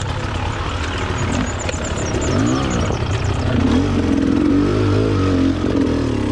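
Beta Xtrainer two-stroke enduro motorcycle engine on a trail ride, its revs rising and falling repeatedly as the rider works the throttle up a rutted climb.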